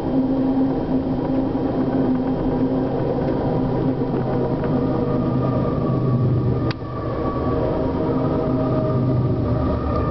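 Close-passing BNSF empty coal train heard from inside a moving passenger train: a steady rush and rumble of freight cars going by, with a deeper diesel engine hum building over the last few seconds as the BNSF locomotives pass. There is a brief dip with a click about two-thirds of the way through.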